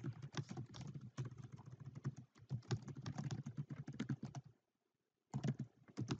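Computer keyboard typing: a quick, uneven run of keystrokes that stops for under a second near the end, then a few more keystrokes.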